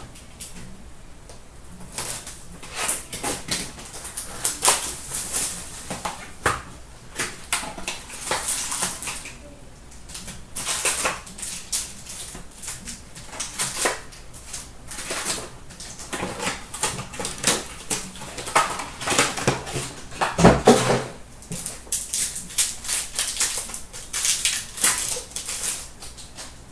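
Crackling and rustling of a cardboard hobby box of hockey trading cards being opened, its wrapped packs pulled out and one torn open, with cards handled. There is a louder thump about three-quarters of the way through.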